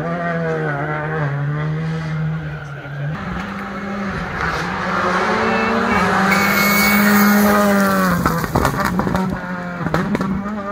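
Rally car engine running hard at high revs on a tarmac stage. Its pitch steps up about three seconds in, grows loudest around seven seconds and drops away about eight seconds in, with sharp cracks near the end.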